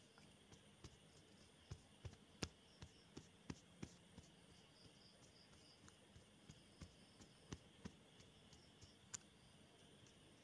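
Near silence broken by faint, irregular clicks and taps, about twenty of them, uneven in spacing and strength.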